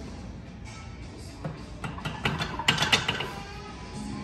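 A barbell loaded to 185 lb being racked onto the steel hooks of a weight bench after a press. It gives a quick cluster of metal clanks and plate rattles starting about a second and a half in, loudest near the three-second mark, over steady background music.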